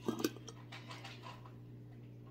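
Metal screw lid being twisted off a glass jar of pipe tobacco: a short scrape about a quarter second in, then faint handling of the jar over a steady low hum.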